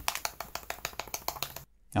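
A container of 30-year-old black technical-pen ink being shaken. The rapid run of clicks is the hardened pigment sediment rattling inside, and it stops suddenly about one and a half seconds in. The rattle is the sign that the pigment has set into a solid brick on the side of the container, leaving the ink unusable.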